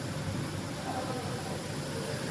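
Steady low hum and hiss of factory background noise, with faint voices in the distance.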